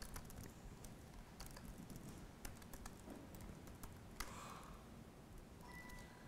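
Faint, sparse keystrokes on a computer keyboard, a few separate clicks spread over several seconds, as editor commands are typed to paste and save code.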